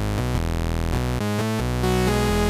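Arturia Pigments software synthesizer patch, a sawtooth oscillator layered with a square wave an octave down, playing a run of low notes that change pitch several times a second. The tone is raw and buzzy, with no filter on it yet.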